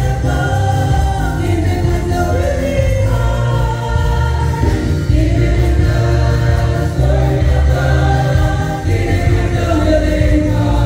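Gospel choir singing with instrumental accompaniment over a strong, steady bass.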